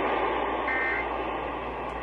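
Portable radio's speaker playing the Emergency Alert System end-of-message data tones: one short two-tone digital burst about two-thirds of a second in, over steady radio hiss. It signals the end of the EAS test broadcast.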